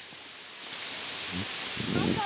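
Steady rushing hiss of a nearby mountain stream, with a few footsteps on the wet, stony path near the end.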